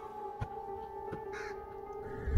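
A pickaxe strikes a dry earth grave mound, a sharp thud about half a second in, over a steady two-tone drone. A short bird call sounds about a second and a half in.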